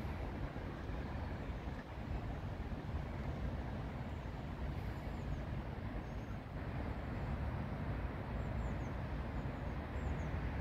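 Steady low rumble of road traffic, no single vehicle standing out.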